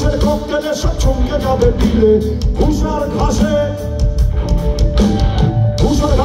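A live rock band playing a Bengali song over a concert PA, with drums, bass, guitars and keyboards under a singing voice.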